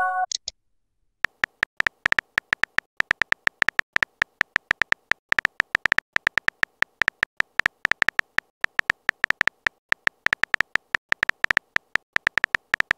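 Smartphone keyboard typing sound effect from a texting-story app: rapid, irregular key clicks as a text message is typed out, starting about a second in.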